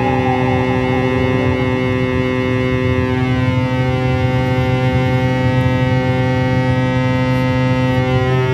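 Electronic drone music: a loud, steady stack of held tones with a strong low hum, its upper overtones beginning to slide and cross one another about three seconds in.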